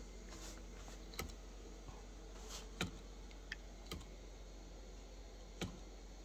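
A few light, irregular clicks and taps from a small homemade magnet rig being set going, the loudest nearly three seconds in.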